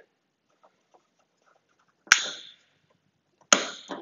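Two sharp clicks about a second and a half apart, each with a brief hiss after it: the aircraft's light switches being flipped on.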